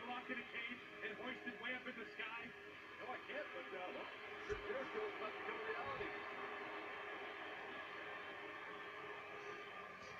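Wrestling broadcast playing faintly from a television: commentators' voices over music, giving way to a steadier run of held music tones after about three seconds.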